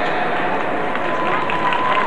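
Murmur and scattered noise of a stadium crowd, with an echoing, indistinct public-address voice. A thin steady high tone comes in about a second in.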